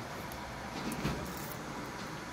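Steady background hum inside a car, with a brief rustle and light clinking about a second in.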